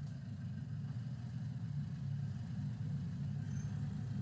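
A steady low hum, with no words or distinct events over it.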